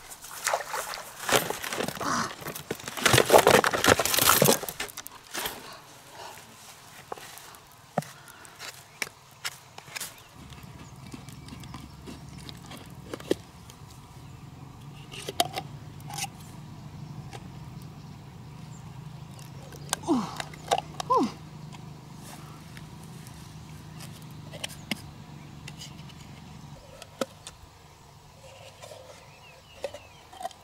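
Footsteps rustling and swishing through long grass for the first few seconds, the loudest part. Then scattered clicks and scrapes of a knife blade prying at freshwater mussel shells, over a steady low hum, with a few short pitched sounds about two-thirds of the way through.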